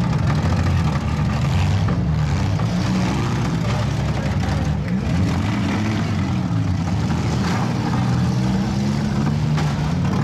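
Several compact demolition derby cars' engines running and revving at once, their pitches rising and falling over one another.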